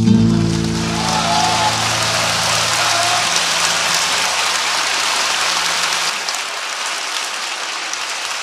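Audience applauding at the end of the piece, with the ensemble's final guitar and double-bass chord ringing out under the clapping for the first few seconds.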